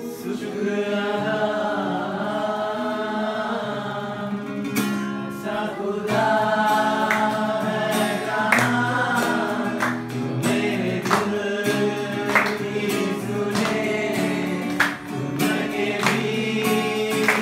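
A Christian worship song sung in Hindi to a strummed acoustic guitar, the strums falling about every second or so under the sung lines.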